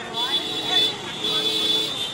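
Busy street ambience: traffic with held vehicle horn tones and people talking.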